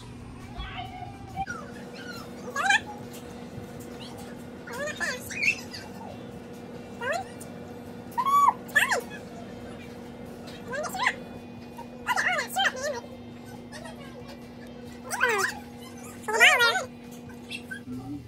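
Short, high-pitched whining calls that rise and fall, coming about eight times, over a steady low electrical hum.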